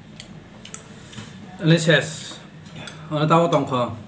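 Wooden chopsticks clicking and scraping against ceramic bowls while noodles are eaten. A person's voice is heard briefly around the middle and again near the end, louder than the clicks.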